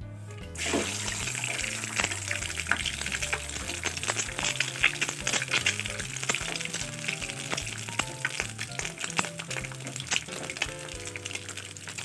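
An egg hits hot oil in a wok and fries, sizzling with dense crackling and spattering. The sizzle starts suddenly about half a second in and eases a little toward the end.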